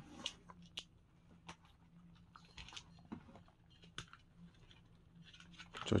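Faint, sparse clicks and light rustles scattered through a quiet stretch, like small objects being handled, over a low steady room hum.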